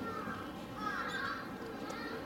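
A harsh animal call of about half a second, wavering in pitch, a little before the middle.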